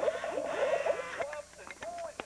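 Croaking from a novelty frog figure, played through a small speaker: a buzzy warbling call for about a second, then a run of short rising-and-falling croaks broken by sharp clicks.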